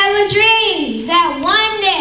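A boy's voice through a microphone, reciting a speech in long, drawn-out phrases that rise and fall in pitch.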